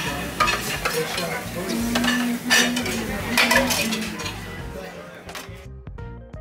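Dining-room clatter of cutlery and dishes: scattered clinks of silverware on plates over a steady room noise, with a held low hum for about two seconds in the middle. The clatter fades out near the end.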